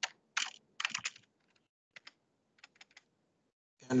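Typing on a computer keyboard: a quick run of keystrokes in the first second or so, then a few scattered single taps.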